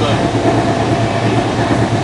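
Running noise inside a double-decker AC express passenger coach at speed: a loud, steady low rumble of the train on the rails.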